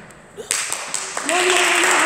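Clapping and children's voices shouting, starting suddenly about half a second in and growing louder about halfway through, with a voice calling out on a held note near the end.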